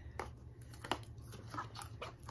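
A few short crinkles and clicks of packaged shopping items being handled, over a faint steady low hum.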